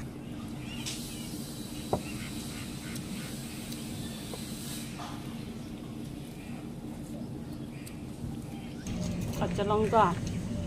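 Eating by hand: fingers mixing watery fermented rice and mouths chewing, over a steady low background hum, with one sharp click about two seconds in. A short pitched call comes near the end.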